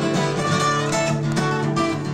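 A solo steel-string acoustic guitar, flatpicked: a quick run of picked single notes rings over sustained lower strings.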